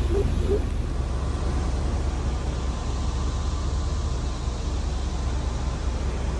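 Steady low rumble and hiss of outdoor background noise, with no clear engine tone or distinct events.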